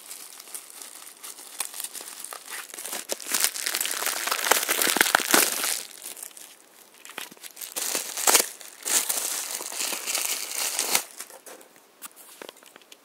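Crinkle-cut paper shred packing filler rustling and crinkling as hands rummage through it in a box. It comes in irregular bursts, loudest around the middle and again toward the end.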